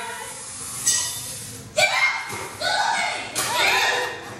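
Excited voices shouting and whooping in a large hall as a stage song ends: a short shout about a second in, then louder calls with swooping pitch from about two seconds in.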